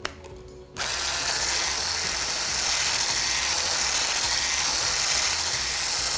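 Electric hand blender with a whisk attachment switched on about a second in, its motor whirring steadily as the whisk whips a liquid in a tall beaker, then stopping at the end.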